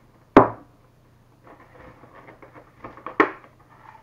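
Hot sauce bottles and their black plastic clamshell tray being handled. There is a sharp knock near the start, quiet rustling and handling after it, and another sharp click near the end.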